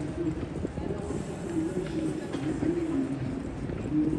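An indistinct voice talking, not clear enough to make out words, over steady outdoor street noise.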